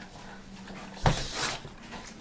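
A pug at a steel water bowl, quiet at first, then one short noisy burst of sound from the dog about a second in.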